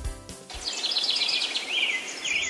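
Small birds chirping rapidly over a steady outdoor hiss, after a brief tail of children's music at the start.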